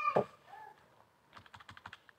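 Keys of an Orpat OT-512GT desktop calculator clicking as they are pressed: one press shortly after the start, then a quick run of presses in the second half as the next sum is entered.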